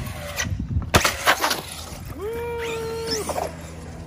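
Traxxas Revo 2.0 RC monster truck landing a ramp jump: a cluster of sharp knocks about a second in, one much harder than the rest. Then its motor whines under throttle, rising, holding one steady pitch for about a second and dropping away.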